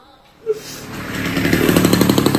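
Motorcycle engine buzzing as it approaches, getting louder from about half a second in.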